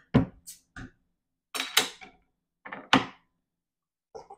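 Glass beer bottle and glass being handled on a bar top: a handful of short knocks and clinks, the loudest a pair about a second and a half in and one just before three seconds.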